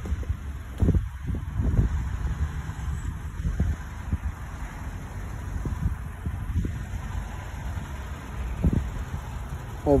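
Outdoor wind rumbling on a handheld phone microphone, an uneven low rumble with louder gusts about a second in and again near the end.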